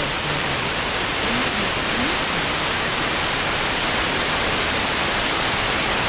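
Steady hiss of a wide-FM radio receiver tuned to 66.62 MHz in the OIRT band, the weak Sporadic-E station almost lost in static. Faint fragments of a voice show through the noise in the first couple of seconds.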